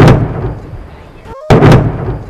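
Two very loud, sudden bursts, one at the start and one about one and a half seconds in. Each fades over about a second and then cuts off abruptly.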